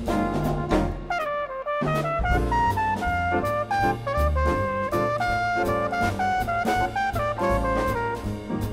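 Instrumental jazz ballad passage: a brass horn plays a melodic solo line, with a note bent downward about a second in, over bass and a drum kit keeping time.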